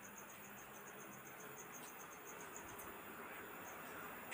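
Faint, rapid and even chirping of a cricket, a quick regular pulse of high-pitched tone, over a low hiss. The chirps thin out and stop about three seconds in.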